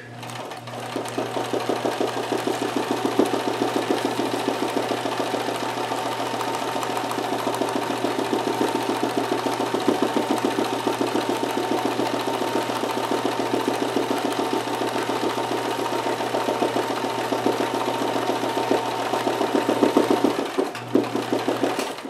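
Kenmore 158.1914 sewing machine stitching continuously at a steady speed for free-motion embroidery: a fast, even run of needle strokes over the motor's hum. It pauses briefly near the end, then runs on.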